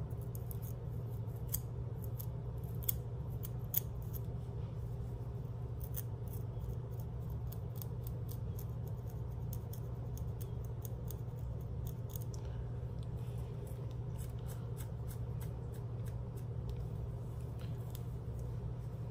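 Close-up scratching of a dry, flaky scalp between braids with a pointed pick and fingernails: a quick, irregular run of crisp scrapes and ticks, over a steady low hum.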